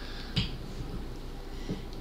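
A sharp click, then a fainter one near the end, from a handheld microphone being picked up and handled, over quiet room tone.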